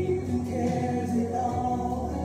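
Women's voices singing a gospel song together into microphones.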